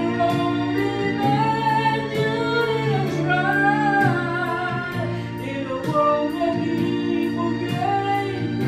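A man singing karaoke into a handheld microphone over a music backing track with a steady beat, holding long notes.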